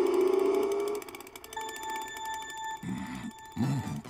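Video-game race-start countdown: a series of short electronic beeps at one steady pitch, then a longer beep, after a held music note stops about a second in. Two brief low swelling sounds come near the end.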